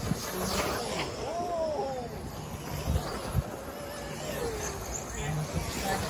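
Electric 1/10-scale 4WD off-road RC buggies racing, their motors whining up and down in pitch as they accelerate and brake. Two short dull knocks land about three seconds in.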